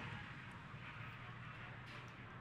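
Faint steady hiss, even and without distinct events.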